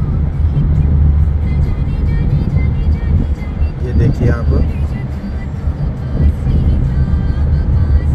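Steady low rumble of a car driving at highway speed, heard from inside the car, with music playing underneath and a brief voice about four seconds in.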